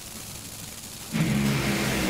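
Two Top Fuel dragsters' supercharged, nitromethane-burning V8s go suddenly to full throttle about a second in as the cars launch off the starting line, a loud steady roar after a quieter start.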